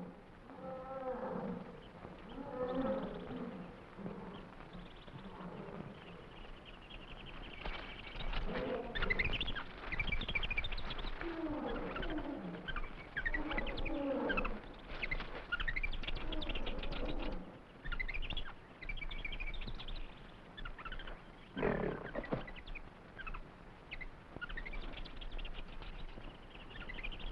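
Film jungle sound effects: a run of wild animal cries, many sliding down in pitch, over high bird chirps, with one loud animal call about 22 seconds in.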